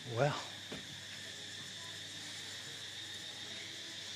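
Steady, high-pitched chirring of insects, unbroken throughout.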